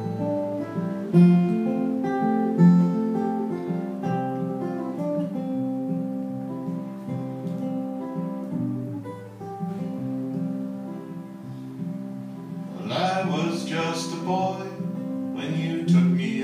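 Solo acoustic guitar playing the instrumental introduction of a song, steady picked notes with two louder accents in the first few seconds. A voice comes in briefly about thirteen seconds in.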